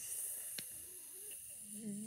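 A girl humming a soft, drawn-out 'mmm' as she hesitates mid-sentence, held on a steady pitch near the end, over a faint steady hiss. A small click about half a second in.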